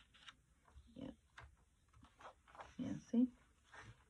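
A few short wordless murmurs from a person, the loudest about three seconds in, with paper rustling and light taps as journal pages are turned and pressed flat.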